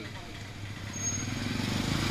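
A low, steady vehicle engine rumble that grows gradually louder.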